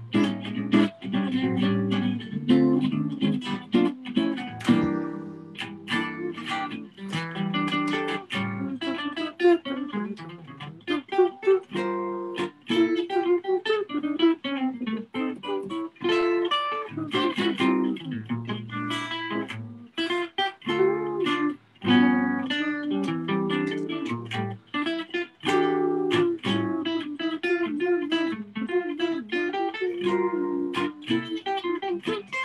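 Solo guitar playing a jazz piece, mixing plucked chords with single-note lines, the notes ringing and overlapping.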